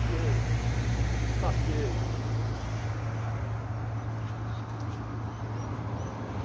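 Street traffic: a vehicle's engine and tyres close by, a steady low hum that fades out after about two seconds, leaving lighter road noise. Faint, indistinct voices in the background.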